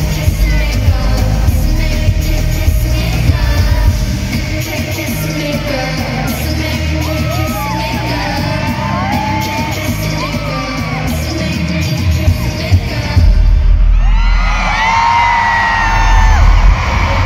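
Live K-pop concert music as heard from the audience: a heavy bass beat with singing over it and fans yelling along. Near the end the music gets louder, with stronger bass and a high sung line.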